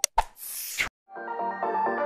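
A sharp mouse-click sound effect, followed by a short rushing noise that stops just before the second mark. Then music with bright, rapidly changing synth notes fades in and carries on.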